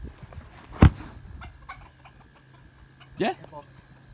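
A single heavy thud about a second in as a shoulder throw (ippon seoi nage) drives a heavy grappling dummy, with the thrower on top of it, onto grass.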